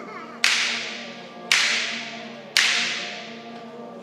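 A middle-school concert band holds a low sustained chord while the percussion plays three loud, sharp hits about a second apart. Each hit rings out and fades before the next.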